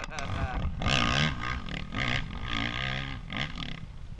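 Dirt bike engine revving hard under load on a steep hill climb, its pitch rising and falling several times with the throttle and gear changes, growing a little fainter as the bike pulls away uphill.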